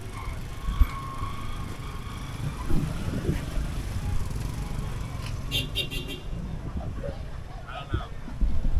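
Busy street ambience: car and motorbike traffic with distant voices, over a steady low rumble. A short, high rattling burst comes about five and a half seconds in.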